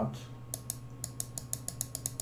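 Typing on a computer keyboard: about a dozen quick, light clicks, coming faster towards the end, over a faint steady hum.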